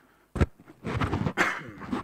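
A single sharp knock about half a second in, then about a second of breathy, wordless vocal sounds from a person.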